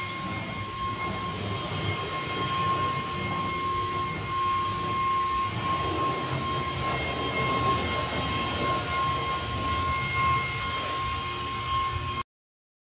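Makita cordless battery leaf blower running steadily to blow snow off a wooden deck: a constant high electric whine over the rush of air.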